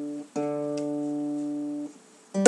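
A steady low tuning note is held for about a second and a half with no fade, then cuts off abruptly, after a short break near the start where the previous held note stops. It is sounded while an acoustic guitar is being tuned.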